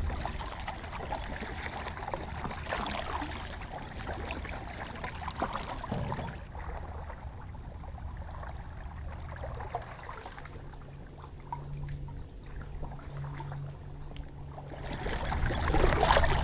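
A kayak being paddled across calm water: water splashing and trickling off the paddle blade and along the hull. The sound is busier for the first six seconds or so, then quieter.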